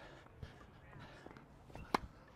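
A tennis racket striking the ball once near the end, a single sharp pop as a backhand slice is hit, over faint court noise.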